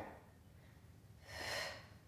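A woman's single audible exhale through the mouth about a second and a half in, breathing out with effort while holding an abdominal curl and working one leg.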